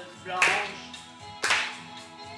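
A song playing, with hands clapping along to the beat. Two claps stand out, about a second apart.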